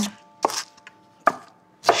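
Chef's knife chopping on a wooden cutting board: three separate sharp strokes, spaced a little over half a second apart.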